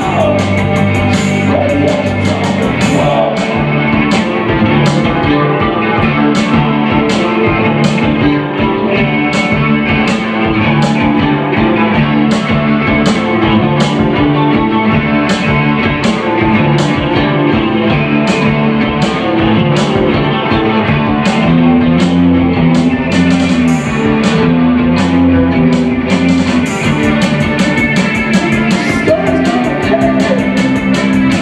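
Live post-punk band playing: electric guitars over a steady beat, with sharp high strikes about twice a second.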